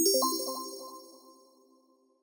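Title-card sound effect: a single bell-like chime struck once, ringing with several clear tones and fading away over about a second and a half.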